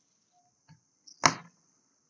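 A quiet pause broken by one short, sharp sound a little over a second in, which fades quickly.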